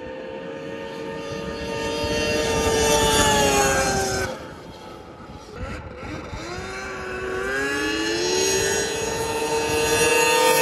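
Three-cylinder two-stroke snowmobile engine running at speed. It builds over the first three seconds, drops in pitch and fades about four seconds in, then climbs in pitch again from about six seconds and is loudest near the end as a sled comes close.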